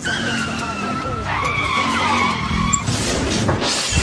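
Tyre screech of a skidding vehicle, a long high squeal that wavers in pitch, followed near the end by a rising rushing noise.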